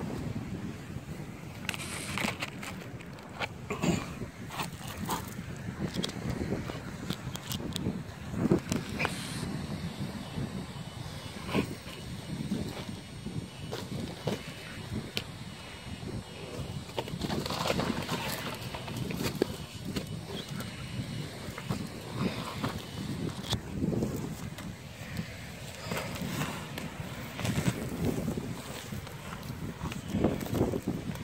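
Irregular scuffing and scraping on sand and gravel with scattered knocks, as a man grapples with a large sea turtle and heaves it off its back.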